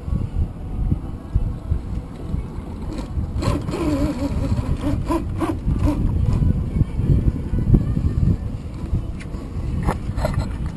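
Steady low rumble of wind buffeting the microphone over the noise of the boat, with scattered clicks and knocks as the rod and reel are handled during a fight with a hooked shark.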